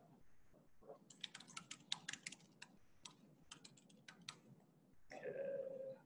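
Typing on a computer keyboard: a quick run of about twenty keystrokes over roughly three seconds, faint, then a short spoken 'uh' near the end.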